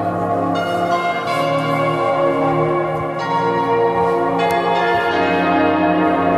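Background music of sustained, bell-like chiming tones, with a new chime entering every second or so over a steady drone.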